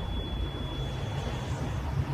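A low, steady rumbling drone from the trailer's sound design, the tail of the hit on the title card. Over it a thin, high ringing tone fades out about one and a half seconds in.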